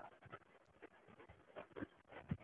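Near silence: faint room tone with a few soft, short ticks.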